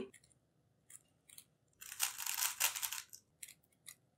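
Plastic 3x3 speed cube being turned quickly by hand: a few single clicks, then a rapid flurry of clicking layer turns about two seconds in, then a few more clicks.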